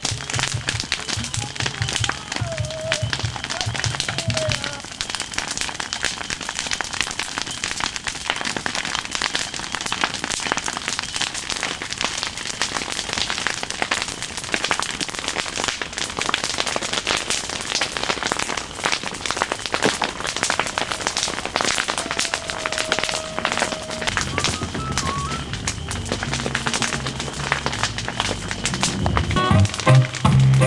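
A large bonfire crackling and popping densely and without a break. Music with a stepped bass line plays under it in the first few seconds and again in the last few.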